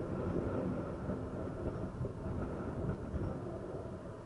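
Wind rumbling on the microphone of a moving motorbike, mixed with the low drone of its engine and the road in city traffic.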